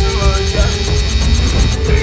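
Electric hair clippers buzzing steadily close up, a low mains-type hum, under background film music.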